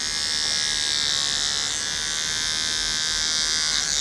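Cordless electric pet nail grinder running steadily as it files down a dog's toenails, a high-pitched whine that cuts off suddenly at the end.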